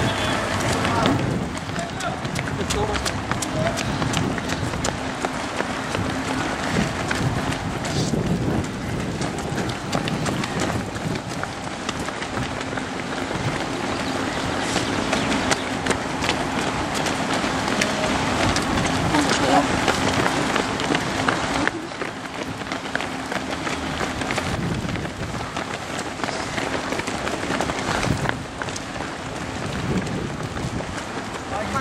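Running footsteps of many road-race runners on asphalt, a dense patter of shoe strikes that goes on without a break, mixed with the voices of spectators.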